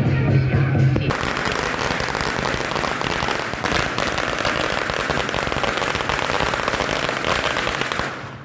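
A string of firecrackers going off in a rapid, continuous crackle of pops. It starts about a second in, cutting over music, and stops at the end.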